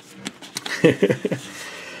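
A man chuckling briefly, a few quick short laughs about a second in, with light clicks and rustling of scratch-off lottery tickets being handled.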